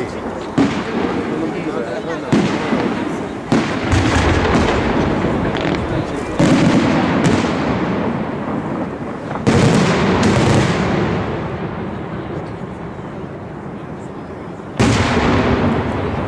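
Aerial firework shells bursting: about six sharp booms a few seconds apart, the loudest near the middle. Each boom trails off in a long rolling echo.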